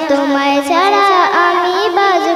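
A young girl singing a Bengali Islamic gazal into a microphone, holding long notes that bend and waver in melismatic turns.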